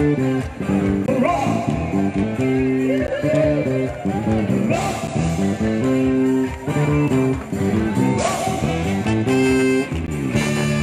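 Live band music with guitar to the fore over a repeating pattern of chords.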